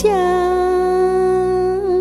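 A woman's voice holding one long sung note in Southern Vietnamese folk-song style, over steady low accompaniment. The note is level at first and breaks into vibrato near the end.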